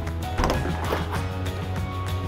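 Background music throughout, with a brief clattering sound from about half a second to a second in as the aluminium panels of a Schüco ASS70 FD bi-folding door are folded open.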